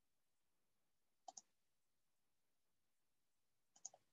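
Near silence broken by two faint double clicks of a computer mouse, about a second in and again near the end.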